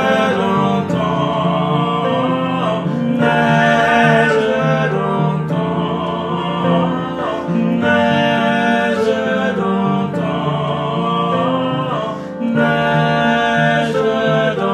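Singing voice with upright piano accompaniment: held sung notes that change pitch every second or two over sustained piano chords.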